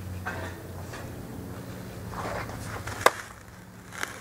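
A pitched softball smacking into a leather catcher's mitt once, about three seconds in: a single sharp pop.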